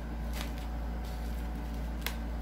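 A cling-wrapped foam meat tray being handled, with a short plastic crackle about half a second in, over a steady low hum.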